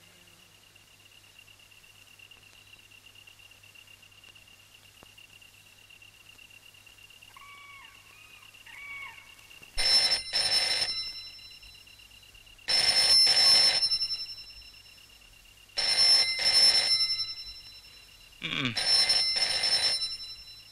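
Telephone ringing: four loud rings about three seconds apart, starting about halfway through, after a quiet stretch with three faint short chirps.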